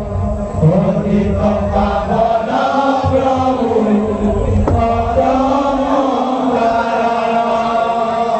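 Devotional kirtan chanting, with voices holding long notes that bend up and down, over hand-played two-headed barrel drums (khol).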